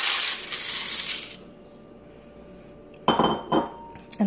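Dry, broken lasagna noodles sliding and clattering out of a bowl into a slow cooker, a dense rattle for about the first second and a half. A couple of short knocks near the end.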